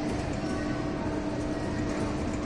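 Steady arcade background din: a constant mechanical hum with a couple of held tones, unchanging, with no distinct clicks or claw movement.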